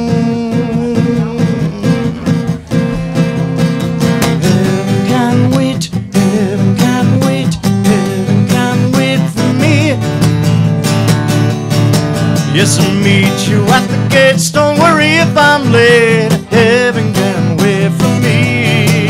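Acoustic guitar strummed steadily through an instrumental break in a country-style song. About halfway through, a wordless sung line with a wavering pitch joins in.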